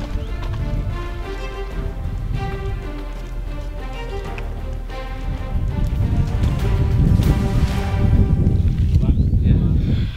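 Background music carrying a melody of held notes. In the second half, a low rumble of wind on the microphone grows louder beneath it.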